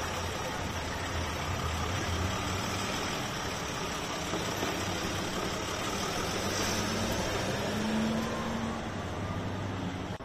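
Motor vehicle engine idling: a steady low hum over even street noise.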